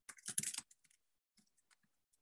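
Typing on a computer keyboard, with a quick run of key clicks in the first half-second or so, then a few scattered faint taps.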